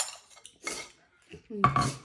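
A spoon clinking and scraping against a ceramic bowl, a few short strokes, then a brief loud voice sound near the end.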